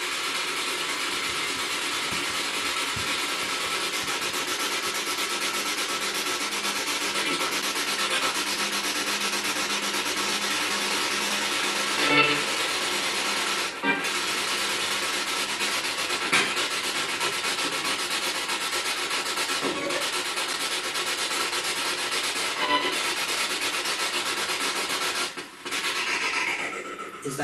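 Spirit box sweeping through radio frequencies: a steady hiss of static with brief snatches of radio sound in it, cutting out briefly about 14 seconds in and again near the end.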